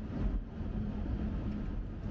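Chevrolet Corvette Grand Sport's 6.2-litre V8 running steadily under way, heard from inside the cabin as a low steady rumble mixed with road noise.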